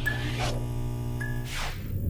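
Logo-intro sound effects: a steady electrical buzz of a neon sign, with two whooshes about half a second and a second and a half in.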